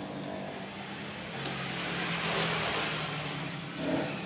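A motor vehicle passing by: its engine hum and road noise swell up and fade away over about two seconds, over a steady low engine hum.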